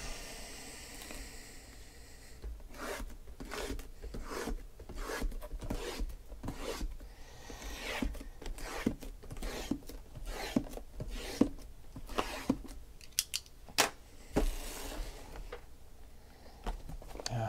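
Shrink-wrapped cardboard card boxes being handled and shifted on a table: irregular crinkling and scraping of plastic wrap and cardboard with many light clicks and knocks, a few sharper clicks late on.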